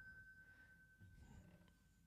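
A small bell's single high tone ringing on after being struck, fading slowly and dying away near the end.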